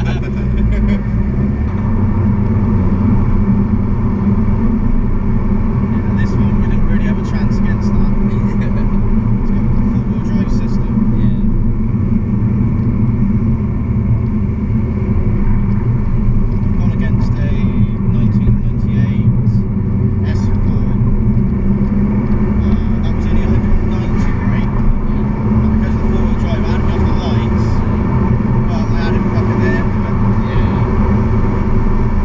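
Steady engine and road drone heard inside the cabin of a modified Skoda Octavia vRS Mk1 with a hybrid turbo, cruising at an even pace with no hard acceleration.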